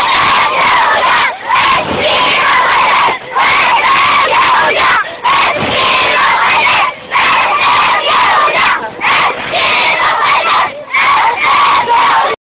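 A crowd of women and children shouting a protest chant together, loud, in phrases of one to two seconds broken by brief pauses.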